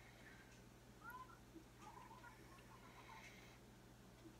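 Near silence: room tone, with a faint short high call about a second in and a few fainter blips just after.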